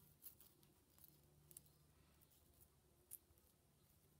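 Near silence: faint room tone with a few soft ticks from dried beech leaves being handled with metal tweezers on a paper page, the clearest tick about three seconds in.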